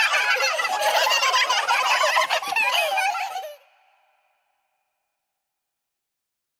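High-pitched, sped-up cartoon voices chattering and giggling over one another, fading out about three and a half seconds in, then silence.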